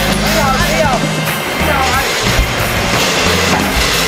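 Background music with sustained bass notes and a wavering, gliding melody line, possibly a vocal.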